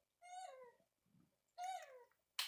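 A young Java macaque cooing: two short calls about a second apart, each sliding down in pitch.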